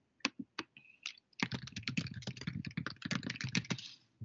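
Typing on a computer keyboard. A few separate key presses come first, then a fast, continuous run of keystrokes from about a second and a half in until just before the end.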